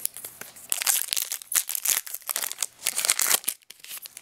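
Foil wrapper of a Pokémon trading-card booster pack crinkling and tearing as it is ripped open by hand, a dense crackle that starts about a second in and stops briefly near the end.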